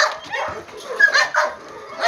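Dogs giving a few short, high-pitched yips and barks.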